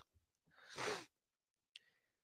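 A man's single audible breath close to the microphone, lasting about half a second, followed by a faint click near the end.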